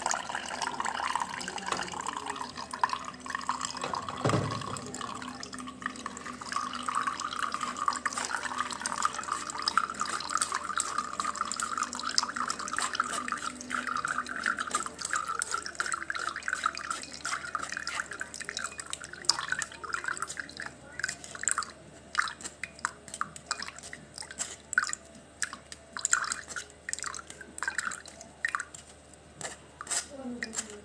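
Blended cucumber, celery and lemon juice running through a mesh strainer into a tall glass in a steady trickle, with one low knock about four seconds in. After about fifteen seconds the stream thins into separate drips falling into the glass.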